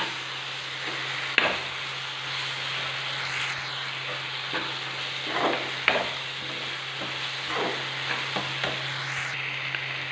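Chopped onions, tomatoes and green chillies sizzling in oil in a nonstick kadai as a spatula stirs and scrapes through them, with a few sharp clicks of the spatula against the pan. A steady low hum runs underneath. The onion-tomato base is being cooked down for a prawn thokku.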